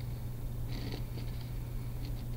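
A pen scratching across paper in short strokes while drawing, the longest stroke a little under a second in, over a steady low hum.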